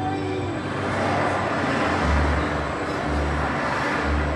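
Immersive-show soundtrack over loudspeakers: music with a swelling rush of road-traffic sound effect and low bass pulses about once a second.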